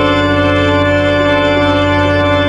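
Chapel organ playing sustained chords, many notes held together at a steady, full level.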